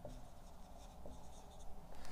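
Dry-erase marker writing on a whiteboard, a few faint strokes.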